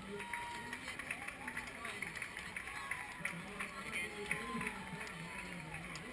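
Runners' footsteps on the road at a race finish, a scatter of short sharp taps, under a crowd of spectators talking and calling out.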